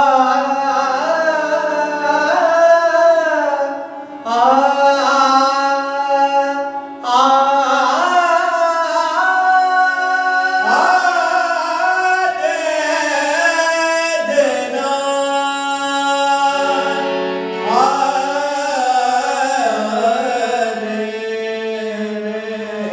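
Two male voices taking turns singing a slow Hindi song in long, held, gliding notes, accompanied by a sustained harmonium.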